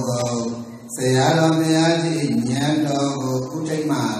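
A man's voice chanting a Buddhist Pali recitation in long, steady held notes, with a brief break just before a second in.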